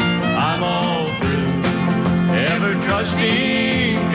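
Country band playing a song on acoustic guitars and fiddle, with melody notes that slide up and down.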